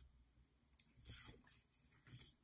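Near silence, with faint rustles of a paper card front being handled, mostly around a second in.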